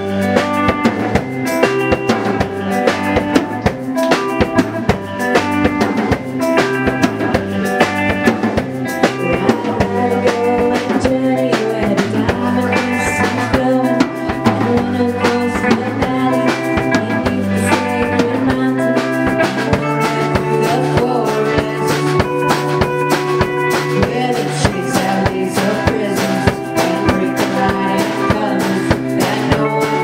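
A live rock band playing electric guitar, electric bass and a drum kit, with a steady drum beat under the guitar and bass notes.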